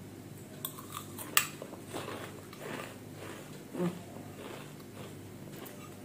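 Close-up chewing of a crunchy namkeen mix of flattened-rice chivda and chana, soft irregular crunches, with one sharp click about a second and a half in.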